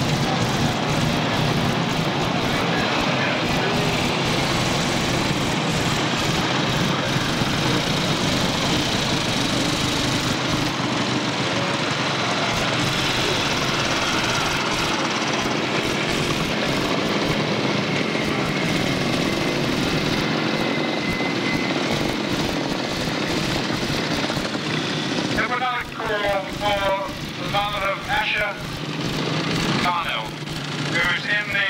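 Vintage motorcycle engines running as several bikes ride slowly past in a parade, a steady, unbroken mix of engine noise. Near the end a man's voice comes in over it.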